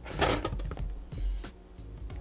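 Background music, with a few brief rustles of a cardboard box and plastic packing being handled, one near the start and another about a second in.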